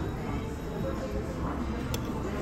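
Restaurant background: music playing with a murmur of other diners' voices, steady and moderate in level.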